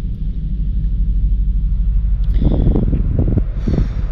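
A steady low rumble, with a few short, faint voice sounds between about two and a half and four seconds in.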